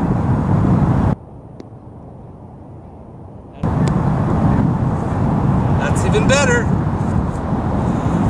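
Steady low outdoor rumble that drops out abruptly about a second in and comes back about two and a half seconds later. A brief voice-like sound about six seconds in.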